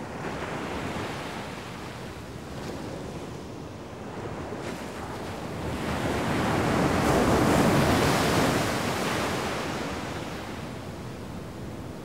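Sea surf breaking and washing up the shore, a steady rush that swells to its loudest about seven or eight seconds in and then ebbs again.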